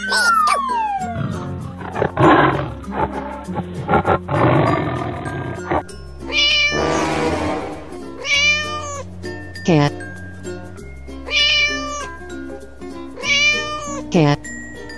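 Cartoon background music with animal sound effects: a long rough animal call in the first half, a short hiss, then a cat meowing three times, each meow falling in pitch, about two and a half seconds apart.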